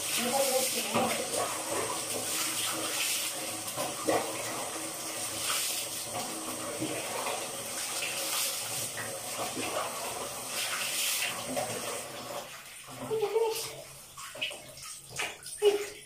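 Water running and splashing as a pug is washed on a tiled shower floor. The flow stops about twelve seconds in.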